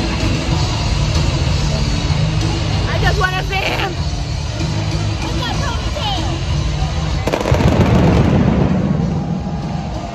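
Wrestling entrance music with a steady heavy beat plays over the arena crowd, with a woman's voice singing or shouting along a few seconds in. About seven seconds in, a sudden loud burst of pyrotechnics goes off and dies away over the next second or two.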